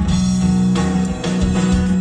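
Live music from a solo performer's acoustic guitar, amplified through PA speakers, with a strong, steady low note under the guitar.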